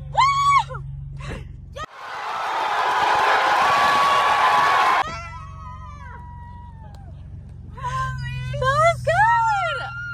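Screams and excited shouts over the low, steady hum of a Nissan sports car's engine during a donut attempt. From about two seconds in, the engine hum drops out under a loud, rising rush of noise with a thin high tone, which cuts off suddenly about three seconds later.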